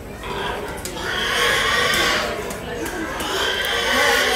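Show pigs squealing, in long shrill stretches about a second in and again near the end, over a constant murmur of crowd voices.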